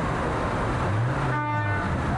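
A vehicle horn sounds once for about half a second, a little over a second in, over steady engine and street noise.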